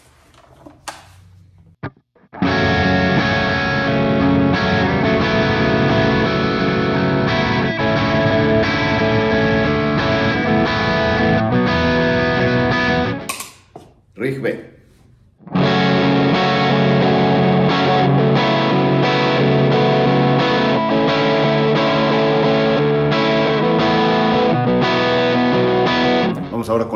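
PRS semi-hollow electric guitar played through an overdriven amp with no effects, in two passages of about ten seconds each with a short break between them. One passage goes through a miked Blackstar HT Club 40 valve amp and the other through a Friedman BE-100 software emulation on a Universal Audio Apollo Twin; which is which is not told.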